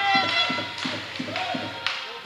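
Steady rhythmic thumping, about three beats a second, in a large sports hall, with high pitched voices or horns sounding over it.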